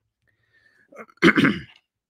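A man clearing his throat once, a short loud burst about a second in after a brief silence.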